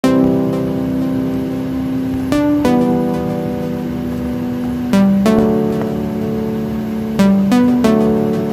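Background music of long held notes that change pitch every two to three seconds, with quicker changes near the end.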